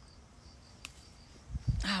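Crickets chirping faintly in an even, quick pulse. A small click comes about a second in, and a low bump near the end.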